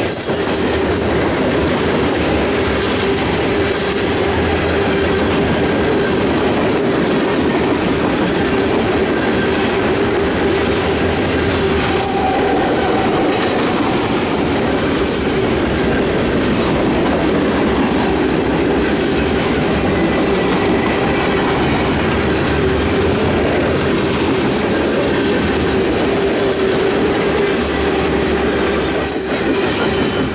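Freight train of covered hopper cars rolling past at trackside: a steady, loud rumble and clatter of steel wheels on rail.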